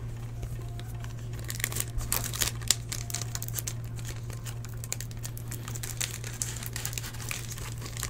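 Plastic wrapping of a sealed trading-card box-topper pack crinkling as hands handle it, with many small irregular crackles throughout.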